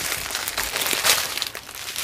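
Small plastic bags of diamond painting drills crinkling as they are handled, in irregular rustles with a louder one about a second in.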